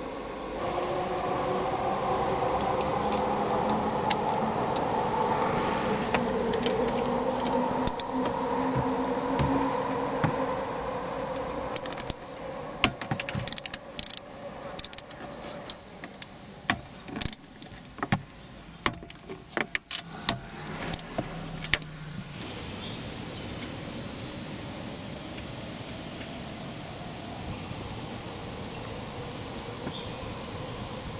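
For about twelve seconds a steady drone with slowly shifting pitch. Then a run of sharp plastic clicks and knocks as the Toyota RAV4's radio head unit is worked loose from the dash and its wiring connectors are handled. Quieter after about 22 seconds.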